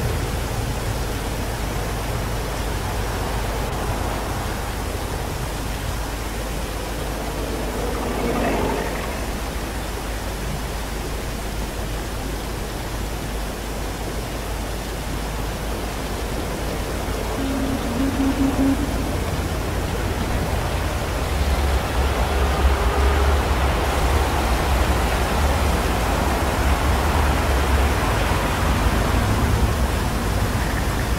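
Steady rushing and splashing of fountain water, an added ambience sound effect, growing louder in the second half.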